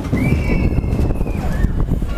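A single high held scream lasting about a second, over a loud rumble of wind and ride noise, as the gondola of a 17 m SBF Visa drop tower drops.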